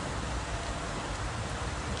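A steady, even hiss of outdoor background noise, with no distinct events.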